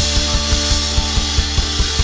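Live rock band playing an instrumental passage: a drum kit beating fast, even hits with a wash of crash cymbals over held guitar chords.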